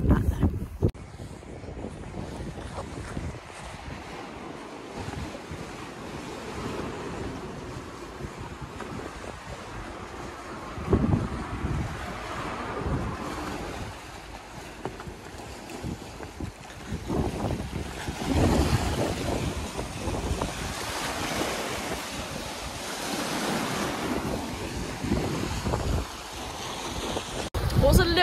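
Sea waves washing onto a rocky shore in swells every few seconds, with gusty wind buffeting the microphone.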